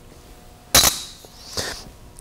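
A single sharp click with a short high ring, about three-quarters of a second in, followed by a fainter, softer brush of sound.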